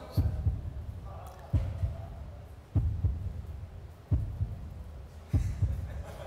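Suspense heartbeat sound effect: five deep, slow thumps, about one every 1.3 seconds, played to build tension before a contestant's result is revealed.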